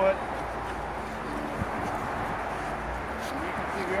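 Faint voices of people talking over a steady outdoor background of hiss and low rumble.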